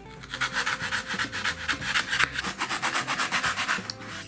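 Utility knife blade sawing back and forth through a white foam block, a quick run of rasping strokes, several a second.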